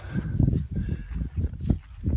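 Irregular low thumps and rustling, five or six heavy pulses in two seconds: footsteps on leaf-strewn grass and handling noise from the phone filming.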